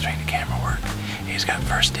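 A man whispering over background music with a bass line that steps from note to note.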